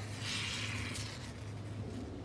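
Aerosol can of Great Stuff expanding foam hissing as foam is squirted from its nozzle into a hole, a single hiss of under a second near the start.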